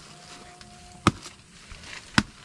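A blade chopping into a fallen banana trunk: a single sharp chop about a second in, one of a steady run of strokes while a banana grove is cleared.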